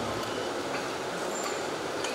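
A pause in speech filled by steady background hiss of the room, picked up through the speaker's microphone, with no distinct event standing out.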